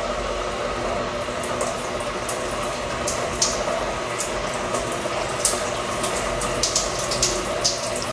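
Overhead rain shower running steadily, water pouring down onto hair and hands, with a few brief splashes as hands work through the wet hair.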